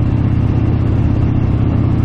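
Harley-Davidson V-twin motorcycle engine running steadily while cruising at a constant speed, heard from the rider's seat.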